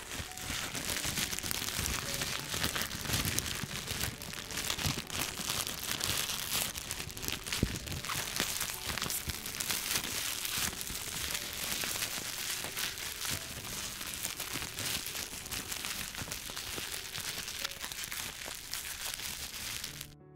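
Clear plastic wrapping from a sketch pad being crumpled and squeezed in a hand: a continuous dense crinkling and crackling.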